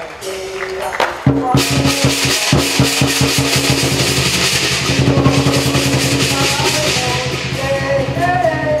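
Chinese lion dance drum comes in about a second in with rapid, dense strokes, joined moments later by cymbals played along with it, keeping up a fast, continuous beat for the lion's high-pole routine.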